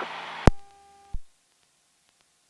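Hiss of an aircraft radio/intercom audio feed with a faint steady hum, broken by a sharp click about half a second in, after which the hiss dies away. A second click comes just after a second, then the sound cuts to dead silence.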